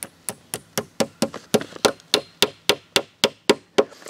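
Claw hammer tapping plastic cap nails through 6 mil plastic sheeting into a soft wooden frame board: a quick, even run of about sixteen light strikes, a little under four a second.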